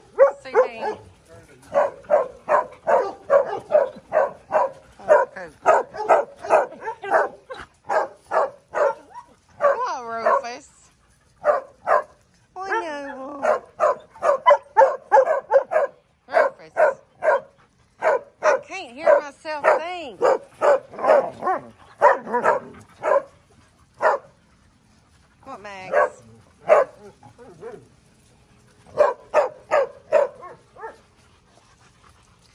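A dog barking rapidly and repeatedly, about three barks a second, in runs broken by short pauses, with a few drawn-out, wavering calls among them.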